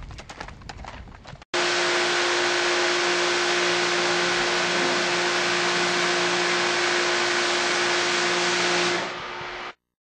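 Hoofbeats of a spotted saddle horse moving in a gait on a dirt track for the first second and a half. Then, after a sudden cut, a loud steady hiss with a constant hum, like a motor-driven blower or spray, runs until it drops away just before the end.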